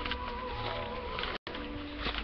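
A fly or similar insect buzzing close by with a wavering pitch, over low outdoor rumble; the audio drops out for an instant partway through.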